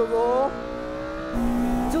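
Honda Civic K20A 2.0-litre inline-four engine heard from inside the cabin on track, its note rising briefly and then running steady. About a second and a half in, it switches to a second K20A-engined Civic's cabin sound, running at a steady pitch.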